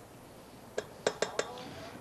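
A quick run of about five light clinks, a spatula and a small dish knocking against a stand mixer's metal bowl as butter is scraped in, about halfway through.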